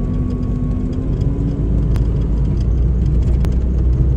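Car driving along a road, heard from inside the cabin: a loud, steady low rumble of engine and road noise.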